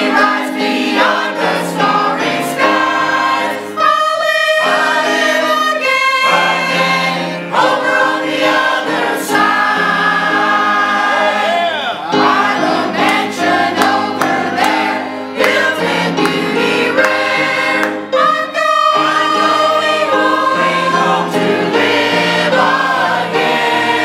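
A mixed church choir of men's and women's voices singing together, loud and steady.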